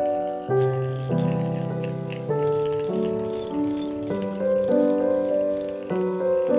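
An electric hand mixer runs with its beaters rattling against a glass bowl as they whip cream cheese, over background piano music.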